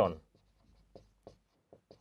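Whiteboard marker writing on a whiteboard: a few short, faint strokes as letters are written.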